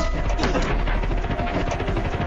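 A sudden loud burst of rumbling noise, dense with rapid small impacts, that lasts a little over two and a half seconds over a held electronic score.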